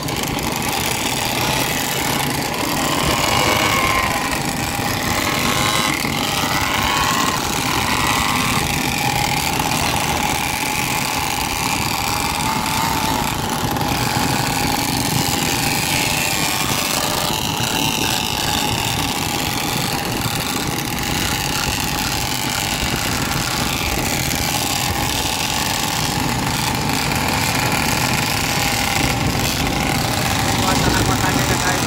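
Engines of a group of small motorcycles, mini racing bikes and scooters running together as they ride along a road, heard from one of the moving bikes. The engines run steadily, and some engines rev up and down now and then.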